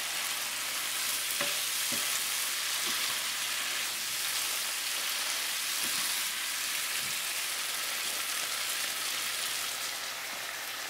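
Squid stir-fry sizzling steadily in a non-stick skillet as its sauce cooks down and thickens, with a few faint knocks.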